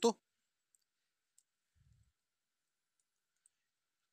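The end of a spoken word at the very start, then near silence: room tone with a few faint, tiny clicks.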